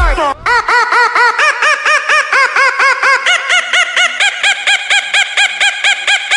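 A cartoon comic sound effect: a rapid run of short squawk-like calls, each rising and falling in pitch, about four a second. It begins just after a quick falling slide as the music cuts out.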